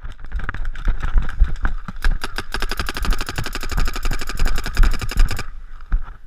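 Paintball marker firing a rapid string of shots, about a dozen a second, for roughly three seconds, then stopping abruptly. Before that, running footsteps and the knocking of gear as the player moves.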